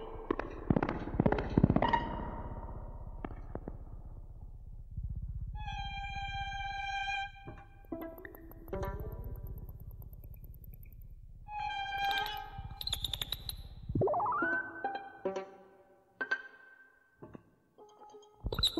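Recording of live electronic music with violin: held electronic tones, scattered sharp clicks, and a low rumble that stops about fourteen seconds in, followed by a tone gliding upward.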